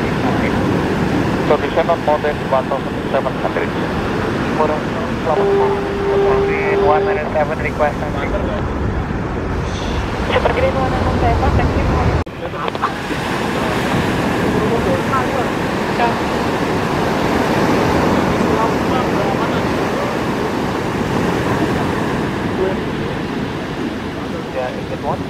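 Airbus A330 twin-jet airliner on short final passing low overhead: a steady jet rumble that builds until it breaks off suddenly about twelve seconds in. After the break comes a steady rush of surf and wind, with chatter from onlookers.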